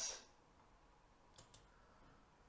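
Near silence: room tone, with two faint quick clicks about a second and a half in, typical of computer mouse or keyboard use at a desk.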